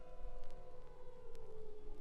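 Avant-garde orchestral music: several held tones slide slowly downward in pitch together, with a couple of sharp clicks. New lower tones enter near the end.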